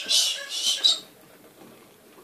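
Ferret lapping and smacking at a bowl of soupy food: a quick run of wet licks that stops about a second in.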